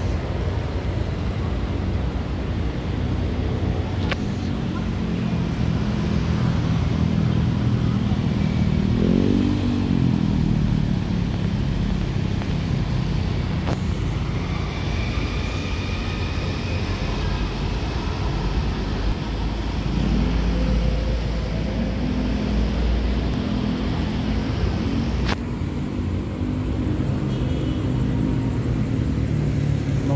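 Steady city street traffic: cars and motorcycles passing with a constant low engine rumble, one vehicle rising and then falling in pitch as it goes by about nine seconds in. A few sharp clicks stand out along the way.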